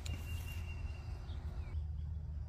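Handling of the phone as it is turned around outdoors: a click at the start over a steady low rumble on the microphone. A thin, steady high tone lasts about a second and a half, and a short chirp follows near the end.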